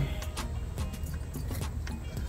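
A few faint plastic clicks and rattles of a wiring connector being plugged together in a car's overhead console, over quiet background music.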